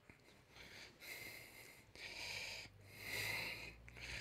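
Faint breathing close to a microphone: three soft breaths about a second apart.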